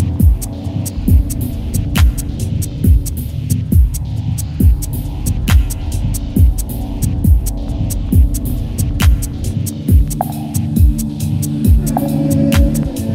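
Bass-heavy electronic dance music from a DJ mix. A steady kick-drum pulse runs over a deep droning bass, with ticking hi-hats above. A higher held tone comes in near the end.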